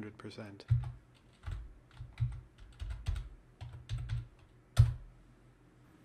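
Typing on a computer keyboard: irregular keystrokes with dull thumps, ending with one louder key press near five seconds in.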